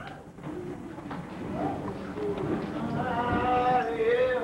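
Voices in the room, then an organ comes in with held chords in the last second or two.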